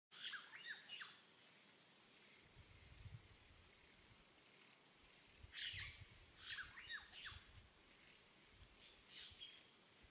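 Songbirds chirping in short quick bursts: a cluster at the start, another in the middle and one more near the end. Under them run a steady thin high-pitched tone and a faint low rumble that comes and goes.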